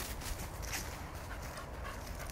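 A dog sniffing and panting faintly.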